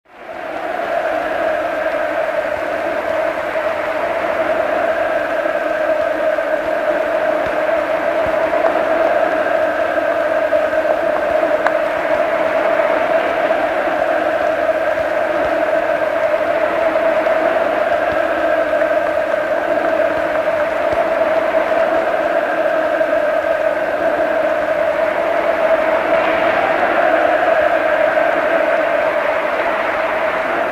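A large crowd cheering and shouting without a break, fading in at the start, on an old archival film soundtrack.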